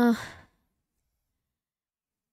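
The end of a drawn-out, steady "uhh" of hesitation, fading into a breathy exhale within the first half second, then near silence.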